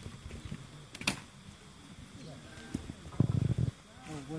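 Faint voices of people talking, with a sharp click about a second in and a short, louder low-pitched burst of noise a little after three seconds.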